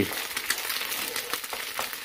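Egg frying in hot coconut oil in a non-stick pan, a steady sizzle with many small crackles, while a wooden spatula stirs and scrapes it into small pieces.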